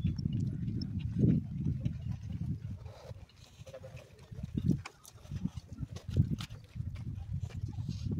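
Wind buffeting the phone's microphone in uneven gusts, a low rumble that swells and drops, quieter for a moment around the middle.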